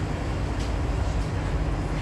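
Steady low hum of a Kawasaki-Sifang C151B MRT train standing in an underground station with its doors open, with a constant low tone underneath.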